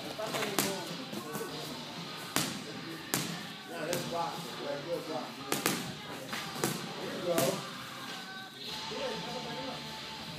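Boxing gloves landing punches in sparring: several sharp smacks at irregular spacing, over background music and voices.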